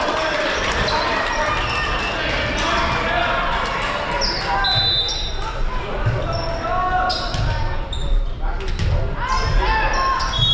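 Indoor volleyball match in a large gym: sneakers squeaking briefly on the hardwood floor, the ball thudding, and players and spectators talking and calling out throughout.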